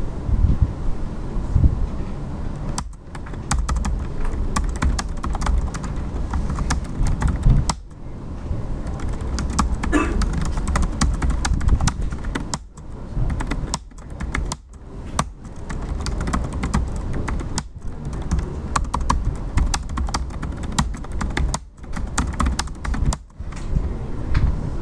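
Fast typing on a computer keyboard: keystrokes clicking in quick runs, broken by several short pauses.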